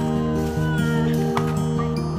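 Background music with a steady, repeating bass line and a short high gliding note about a second in.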